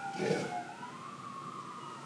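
A faint emergency-vehicle siren wailing in slow pitch glides, one tone sliding down while another slides up. A short murmur of a voice comes just after the start.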